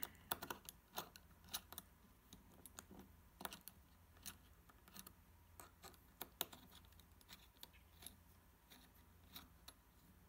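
Faint, irregular small clicks and scrapes of a hex key turning a small screw in an extruder's metal block as it is tightened by hand.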